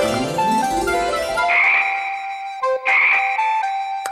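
Cartoon sound-effect frog croaks, two raspy croaks in the second half, over bright children's background music with quick rising runs of notes.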